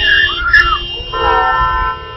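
A young child screaming and crying in distress, in repeated high arching wails that stop suddenly near the end, over a low traffic rumble.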